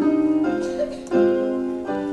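Keyboard accompaniment playing sustained chords, with the chord changing about half a second in, again just over a second in, and near the end.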